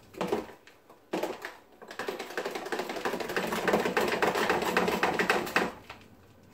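A metal spoon stirring a tall glass of blended iced coffee, clinking rapidly against the glass. There are two short goes near the start, then a steady run of about three and a half seconds.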